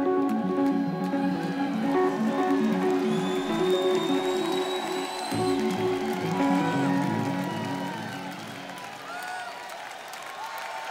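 A live rock band holding out the final chords of a song, the notes fading away from about eight seconds in, with the crowd cheering underneath.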